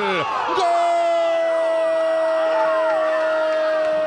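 Football commentator's drawn-out goal cry, one vowel held on a single steady pitch from about half a second in, over a stadium crowd cheering.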